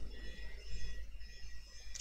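Quiet pause between speech: faint room noise with a low steady hum.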